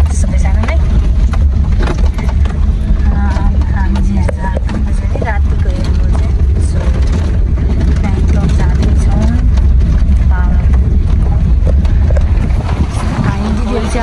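Car interior sound while driving slowly over a rough dirt lane: a steady low rumble from the engine and tyres, with people talking over it.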